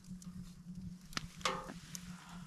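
A person tasting hot stew: one sharp click of a spoon about a second in, then a short hummed "mm" just after halfway.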